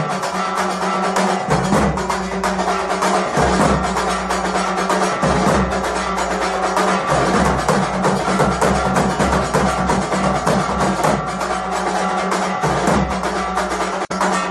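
Temple aarti music: drums and other percussion struck in a fast, steady beat over a held low tone.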